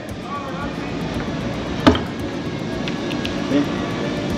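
Steady low background rumble with faint voices, and one sharp knock about two seconds in.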